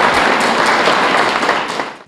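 Banquet audience applauding, a dense steady patter of many hands clapping that fades out just before the end.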